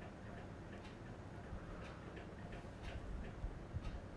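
Faint light ticks over low steady room noise, more of them in the second half.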